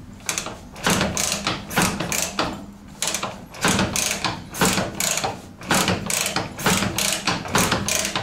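Soviet KMZ flat-twin motorcycle kicked over repeatedly on its kickstarter with the ignition off, a mechanical clatter about twice a second with a short pause near the middle. The engine is not firing: the kicks are only pumping fuel into freshly fitted PZ30 carburetors.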